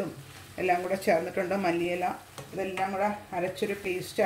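A woman speaking, with a faint sizzle of green beans and chana dal being stirred with a spatula in a frying pan beneath her voice.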